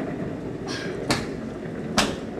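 Scooter boards' small casters rolling over a hard hallway floor in a steady rumble, with a few sharp scuffs about a second in and near the end as hands pull along the floor.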